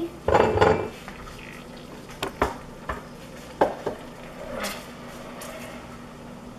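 A utensil stirring onion in melted butter in a stainless-steel saucepan, knocking and clinking against the pot's metal sides several times, with a louder bump just after the start.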